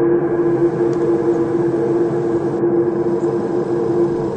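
Steady ambient drone of several held low tones, unchanging throughout.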